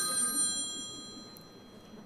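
Mobile phone ringtone, several steady high tones fading and stopping about a second and a half in as the phone is switched off.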